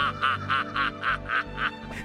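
A man laughing heartily in a quick run of 'ha-ha-ha' laughs, about four a second, over background music; the laughter stops shortly before the end.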